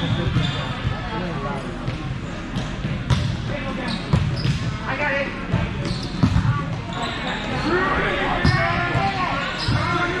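Indoor volleyball match in a large, echoing gym: a ball struck with sharp smacks several times, over a steady din of players and spectators calling out. A cluster of high squeaks and calls comes near the end.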